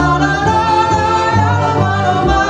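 A woman singing into a microphone, holding long notes, with a small live band of accordion and double bass playing along.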